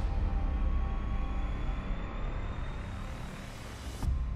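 Cinematic logo sting: a deep rumble under a hissing swell, with faint tones slowly rising in pitch, the whole gradually fading.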